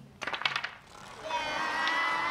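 Wooden staffs clacking in a quick flurry, then a group of children shouting one long drawn-out call together, starting about a second in and held to the end.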